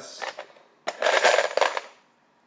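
Numbered raffle pieces rattling inside a plastic box as it is shaken: a short rattle at the start, then a louder one lasting about a second.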